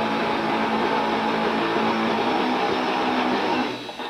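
Live band playing loudly with electric guitar, a dense wall of held guitar tones; the sound drops away sharply just before the end.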